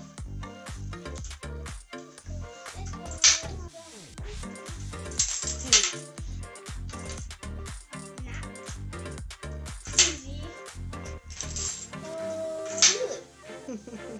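Plastic Connect 4 discs dropped into the plastic grid, each landing with a sharp clack. There are several of these, a few seconds apart, over steady background music.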